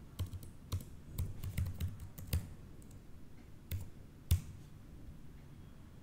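Typing on a computer keyboard: a quick run of keystrokes over the first two and a half seconds, then two separate clicks, the second the loudest.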